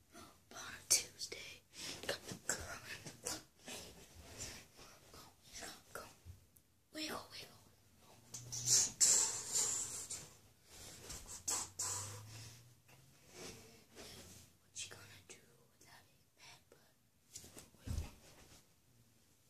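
Whispering and breathing with hissy bursts, over short, irregular scuffs and rustles of a boy dancing on carpet.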